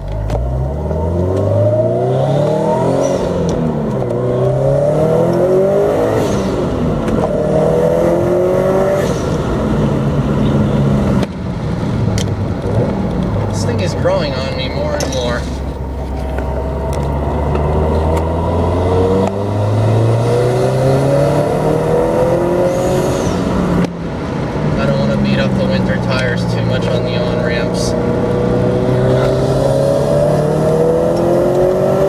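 A 2013 Subaru WRX STI's turbocharged 2.5-litre flat-four, breathing through a Milltek catback exhaust, heard from inside the cabin on the move. The engine pitch rises and falls several times through gear changes, with brief drops in level about a third and four-fifths of the way in and a steadier stretch around the middle.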